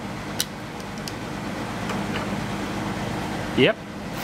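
A few small plastic clicks as a Toyota Echo airbag clock spring's housing and connector are worked apart by hand, over a steady background hum; a short spoken "yep" near the end.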